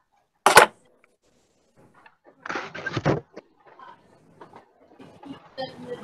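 Handling noise close to a computer microphone: a sharp knock about half a second in, then a second-long rustle about halfway through, followed by faint scattered clicks and rustling.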